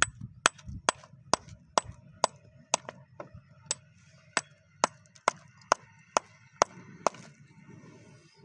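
A small steel hammer striking a rock over and over, about sixteen sharp blows at a steady two per second. The blows stop about a second before the end.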